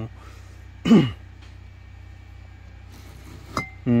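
A man coughs once, a short cough falling in pitch, about a second in, over a low steady hum.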